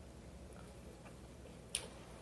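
One sharp click of chopsticks against a ceramic rice bowl near the end, over an otherwise quiet room.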